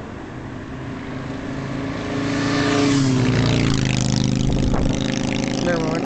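An airplane passing low overhead: its engine noise swells over the first three seconds, then drops in pitch as it goes past and stays loud.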